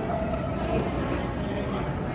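Airport terminal background noise: a steady low rumble of ventilation and distant crowd, with faint far-off voices.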